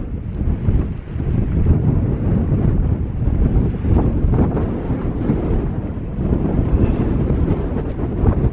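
Strong gusting wind buffeting the microphone: a loud, low, uneven rush that swells and dips with the gusts, easing briefly about a second in.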